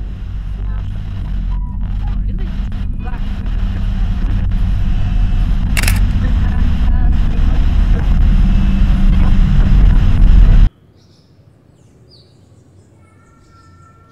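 A low, rumbling swell of noise that builds steadily louder for about ten seconds, with a sharp crack about six seconds in, then cuts off abruptly. Faint high chirps follow near the end.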